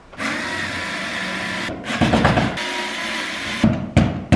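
Small cordless drill-driver running in two steady bursts with a short pause between them, a steady whine over the motor hum, as it backs the screws out of a door nameplate. A few knocks follow near the end.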